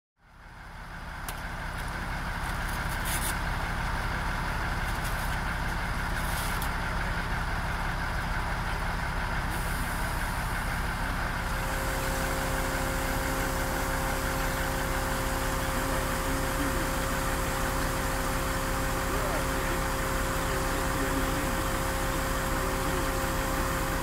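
Mobile crane engines running steadily, with a steady whine of several tones joining about halfway through.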